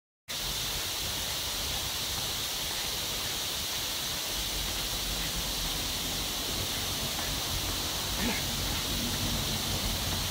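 Steady outdoor background noise with a constant hiss, growing a little rumblier about four seconds in, and one brief voiced sound, like a short grunt or exhale, about eight seconds in.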